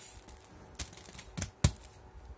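Puffy stickers and their plastic backing sheet being handled and peeled by fingers: a few sharp plastic clicks, the loudest near the end.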